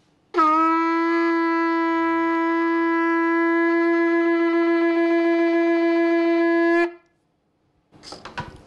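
Yemenite shofar, a long horn left in its natural shape, blown in one steady held note lasting about six and a half seconds. The note scoops up slightly as it starts and cuts off cleanly.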